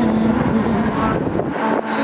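A female singer holds a long note through the microphone over a steady wash of passing street traffic. The note ends a little after a second in, leaving car noise, and a faint note returns near the end.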